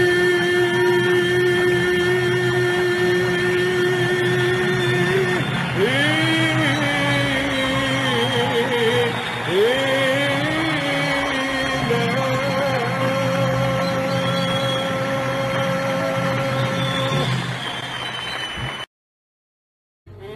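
Arabic orchestral music: the ensemble plays long held melodic notes that slide and waver in pitch. It breaks off to silence about a second before the end.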